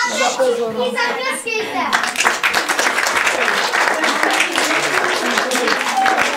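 Audience applauding. The clapping starts about two seconds in and stays steady after a few spoken words.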